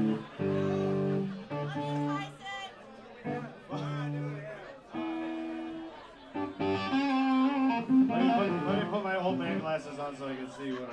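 Laughter, then a live band noodling between songs: a few short held chords with pauses between them, then a busier run of notes in the last few seconds.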